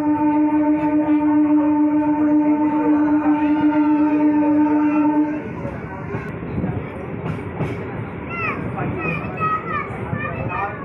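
Local train's horn sounding one long steady blast that stops about five seconds in, followed by the running rumble of the moving train.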